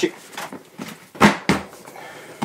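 Hard plastic QBrick System One tool case being handled at its latches and lid: a few light plastic clicks, then two sharp plastic knocks about a quarter second apart a little past the middle, the first the louder.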